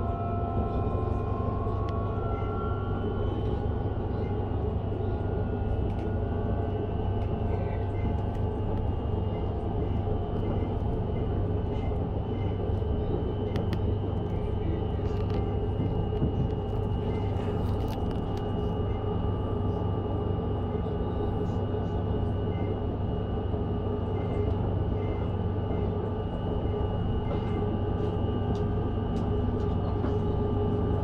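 Passenger train running steadily along the line: an even rumble of wheels on the rails with steady whining tones from the drive, one of them rising in pitch in the first couple of seconds.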